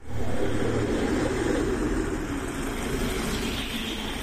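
A passenger minibus running right beside the camera on a city street, a steady engine and road noise with no speech, easing off slightly toward the end.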